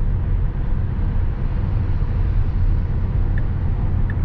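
Steady low tyre and road rumble heard inside the cabin of a Tesla Model S cruising at highway speed.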